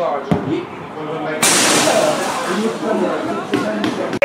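Football match sounds: a single sharp thud of the ball being struck for a free kick about a third of a second in, over spectators' voices, then a sudden louder rush of noise from about a second and a half in that lasts about two seconds.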